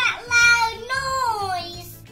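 A young girl speaking in a high, sing-song play voice, her pitch sliding up and down and falling away near the end, as she voices a toy character calling out to its mummy.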